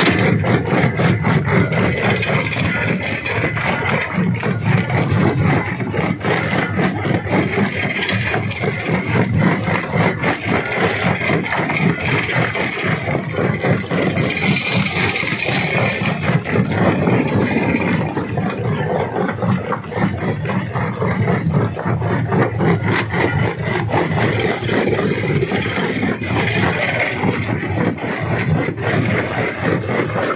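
Rock crusher running and crushing stone: a dense, continuous clatter of rock breaking and rattling over the steady drone of the machine.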